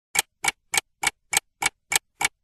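Clock-ticking sound effect: sharp, evenly spaced ticks, about three a second, with silence between them.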